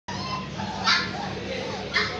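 Persian kittens mewing, two short high calls, one about a second in and one near the end, over a steady low hum.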